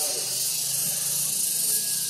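A steady high-pitched hiss, with a faint low hum underneath from shortly after the start.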